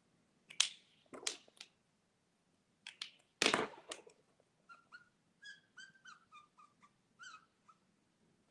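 Felt-tip marker strokes rubbing quickly across paper, the loudest about three and a half seconds in, followed by a run of about a dozen short, squeaky pitched chirps that step down in pitch.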